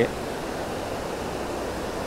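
Steady rush of creek water running over a rocky riffle.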